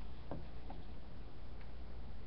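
Low steady room noise with two faint light clicks, one about a third of a second in and another shortly after.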